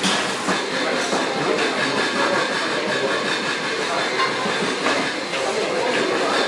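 Steady din of a busy commercial kitchen hall: continuous rushing background noise with light clinks of steel pots, lids and utensils and voices in the background.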